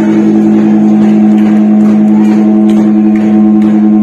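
Live heavy-metal band holding one loud, sustained chord on electric guitars, ringing as a steady drone with a few faint cymbal taps.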